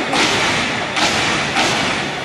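Step team stepping in unison: loud, sharp stomps and claps, three strikes in two seconds, over steady crowd noise.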